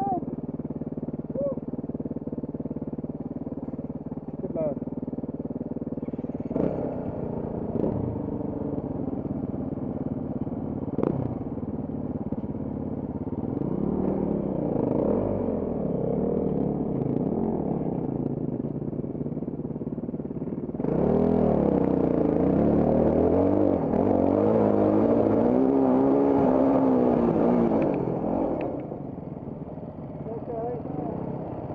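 Off-road trail motorcycle engine ticking over, then ridden along a rough stony lane, its revs rising and falling. A few sharp knocks come early on. It runs loudest and busiest for the last third before easing off near the end as the bike stops.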